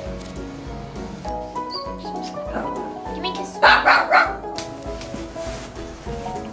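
A small husky-type dog barking, a quick run of about three barks halfway through, over background music with a steady beat.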